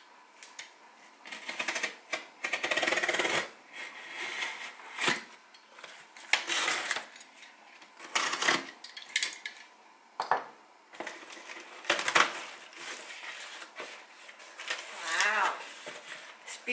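A cardboard shipping box being opened by hand: packing tape slit with a cutter and cardboard flaps pulled and scraped, heard as irregular rustling and scraping bursts, with one longer scrape about three seconds in.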